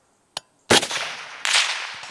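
A suppressed .308 Winchester semi-automatic rifle (DRD Paratus) fires one shot about two-thirds of a second in. It is a sharp crack with a long decaying tail, and a second loud crack follows under a second later. A faint click comes just before the shot.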